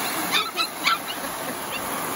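Cavapoo puppy yipping: three short, high-pitched yips in quick succession, then a fainter yip near the end.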